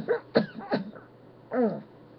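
A man coughing, three short coughs in quick succession, followed about a second later by a short voiced grunt that falls in pitch.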